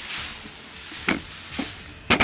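Large clear plastic bag crinkling and rustling as it is moved about, with a couple of sharper crackles after about a second.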